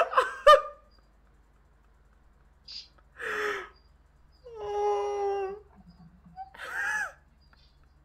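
A young man's stifled laughter, held back behind a hand, coming in several separate bursts, with one long high held note of laughter near the middle.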